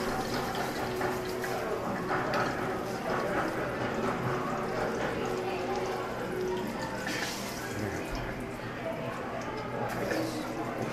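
Plantain slices frying in hot oil in a small pan on a gas stove, sizzling and crackling steadily.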